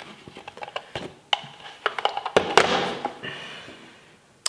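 Handling noise: a scatter of light clicks and taps as a plastic battery charger and its cord are handled and set down on a wooden table, with a brief rustle of a fabric tool bag past the middle.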